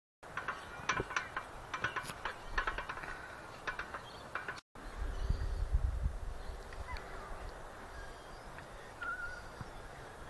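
Metal pivots of an outdoor air-walker exercise machine squeaking in irregular clusters as its pedals swing. After a brief cut, low wind rumble on the microphone.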